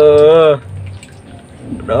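Water splashing and sloshing in a plastic tub as an otter thrashes about catching fish, quieter than a man's drawn-out vocal exclamation that fills the first half-second.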